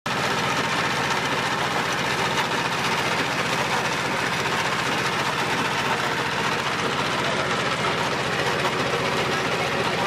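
A diesel engine running steadily and driving a screw-type mustard oil expeller that is pressing seed, with an even, rapid chugging beat.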